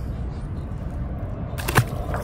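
A released smallmouth bass splashing into the water once, sharply, about three-quarters of the way in, over a steady low background rumble.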